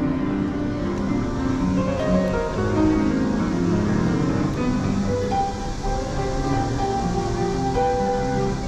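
Upright public piano being played, a melody with runs of notes stepping downward.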